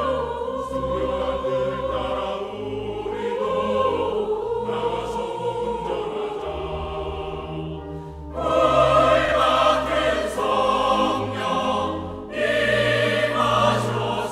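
Mixed church choir singing a Korean hymn in Korean with sustained low instrumental accompaniment. The singing swells to a louder full entry about eight seconds in, dips briefly, then comes back in loud near the end.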